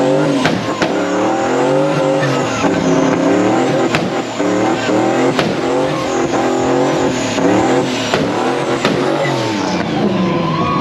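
Ford Mustang doing a burnout: the engine revs up and falls back again and again, over the hiss and squeal of spinning rear tyres. A few sharp cracks come through.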